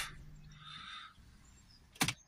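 Audi 3.0 TDI V6 diesel engine being switched off: its low hum stops at the start, and a faint hum and hiss die away within about a second, leaving near quiet.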